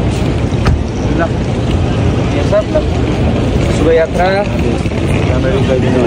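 Loud, steady low rumble of outdoor noise, with people's voices speaking briefly a few times.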